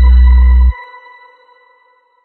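Electronic logo jingle: a heavy bass beat stops abruptly under a second in, leaving a ringing, ping-like tone that fades away over about a second.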